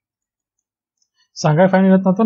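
Dead silence, then a voice starts speaking about one and a half seconds in.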